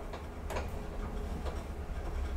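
Deve Schindler hydraulic elevator car descending between floors: a steady low hum, with a few sharp clicks spaced about a second apart.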